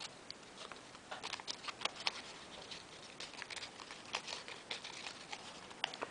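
A small square of origami paper crackling and rustling between the fingers as a folded piece is unfolded: an irregular scatter of short, faint crinkles and clicks.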